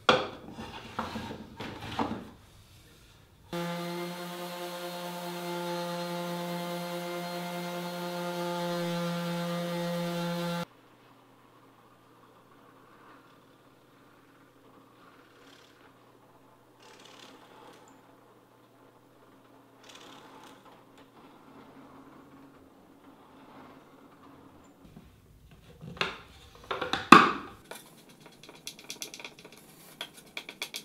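A block plane takes a few strokes, leveling dovetail tails flush with a drawer's front and back. Then a power-tool motor hums steadily for about seven seconds, starting and stopping abruptly. After a long quiet stretch of faint handling sounds, a burst of loud knocks comes near the end, followed by quick light clicks.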